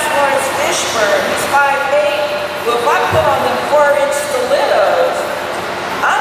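Speech: a woman talking into a microphone.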